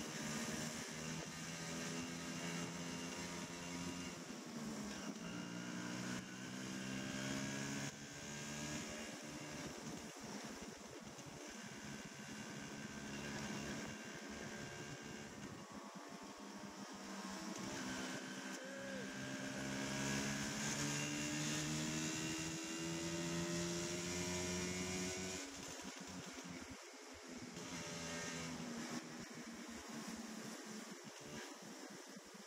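Motor scooter engine running as it rides, its pitch rising and falling with the throttle, with a long steady climb about two-thirds of the way through that drops back suddenly.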